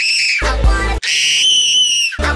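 Extremely high-pitched, sped-up screaming voice held on one shrill note. It is cut off abruptly after about half a second, broken by a short lower-pitched clip, and then the high scream is held again for the last second.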